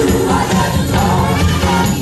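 Live rock band playing loudly, electric guitar over a steady beat, with voices singing along.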